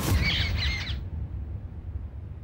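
A sudden low boom, then a short burst of quick bird chirps lasting under a second, with a low rumble under them.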